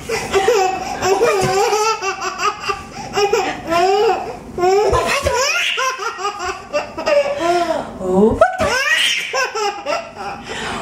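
A baby laughing hard in repeated fits of high-pitched belly laughter, one burst after another with short breaks between.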